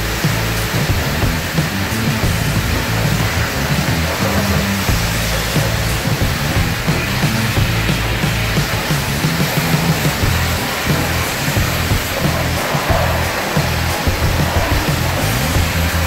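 Music with a stepping bass line plays over a steady hiss of a high-pressure car-wash lance spraying water onto a car.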